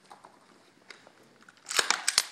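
Rifle being handled: a few faint ticks, then near the end a quick cluster of sharp metallic clicks and rattles from the gun's parts.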